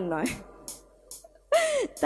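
A woman speaking into a stage microphone: a phrase trails off, then a pause with a few faint breaths, and a short voiced sound, a gasp or exclamation rising and falling in pitch, about a second and a half in.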